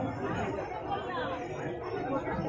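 Several people talking indistinctly in the background, with no other distinct sound.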